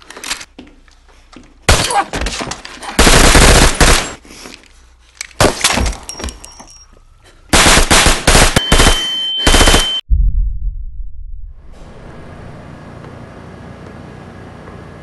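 Several loud volleys of rapid automatic gunfire from a film soundtrack's shootout. Near the end a steady high ringing tone sounds over the last volley, then everything cuts off abruptly into a low rumble and a steady background hum.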